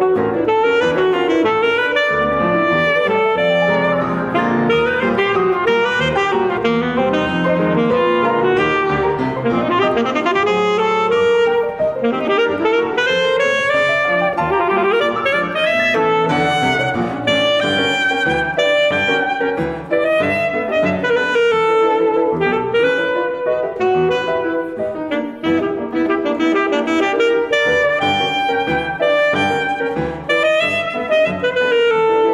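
Alto saxophone and grand piano playing a classical duo piece. The saxophone carries a continuous, quickly moving melody over the piano accompaniment.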